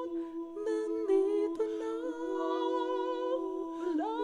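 A song's vocal line of long held hummed notes with no audible accompaniment, gliding between pitches a few times.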